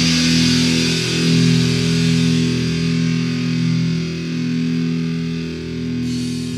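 Thrash/death metal recording: distorted electric guitar chords held and left ringing, the sound slowly thinning and fading over the last seconds.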